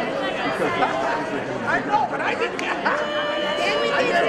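Crowd chatter: many people talking at once in a large hall, no single voice standing out, with one voice held on a steady pitch near the end.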